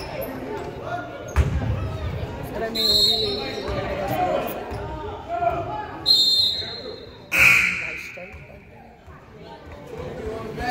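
Sounds of a basketball game on a hardwood gym floor: a ball bouncing, a sharp thud about a second and a half in, and two short high squeals or whistle blasts, over voices echoing through the hall. A loud sudden noise about seven seconds in rings on for about a second.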